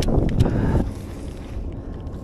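Wind buffeting the microphone as a low rumble, with a sharp knock right at the start and a rough scuffling noise through the first second before it settles.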